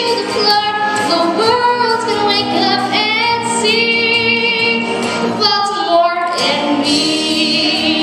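A young girl singing a show tune into a handheld microphone, with vibrato on a held note near the end.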